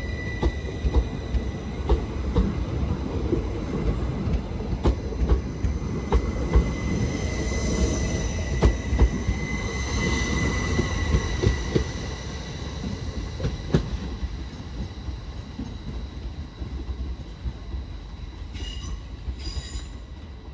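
Northern Class 333 electric multiple unit passing close by: a low rolling rumble with irregular clicks of the wheels over the rail joints, and a steady high whine with overtones above it. It eases somewhat in the last few seconds.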